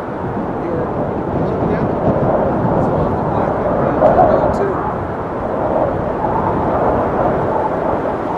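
Strong wind buffeting the camera microphone: a dense low rumble that swells and eases with the gusts, loudest about halfway through.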